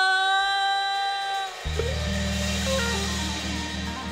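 Soul band playing the final bars of a song. After a short break, a single note scoops up and is held for about a second and a half. Then a low sustained chord comes in under a short run of guitar notes stepping downward.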